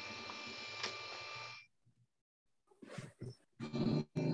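Steady faint background hum from an open microphone on a video call, which cuts off suddenly about one and a half seconds in; a few short, faint sounds follow near the end.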